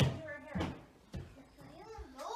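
A house cat meowing briefly, with a sharp knock at the very start.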